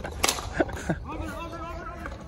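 Ball hockey sticks clacking sharply against the ball and each other during play, about three times in the first second, with players' voices shouting in the background.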